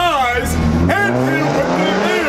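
A motor vehicle's engine on the street, its low drone rising slowly in pitch as it speeds up, under a man's shouted speech.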